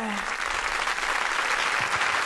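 A studio audience applauding. It begins as the last note of a song dies away at the very start.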